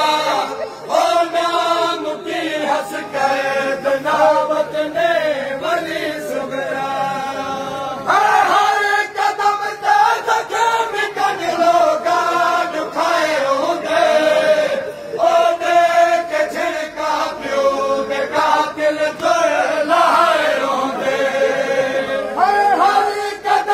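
A group of men's voices chanting a noha, a Shia lament, in long sung phrases. A louder line begins about eight seconds in.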